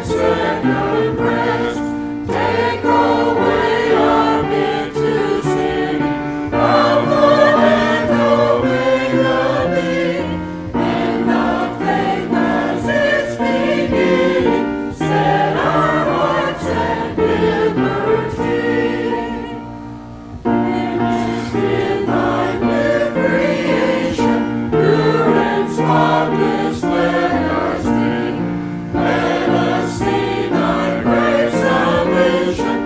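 A church choir singing a hymn together with the congregation, with a short break between lines about twenty seconds in.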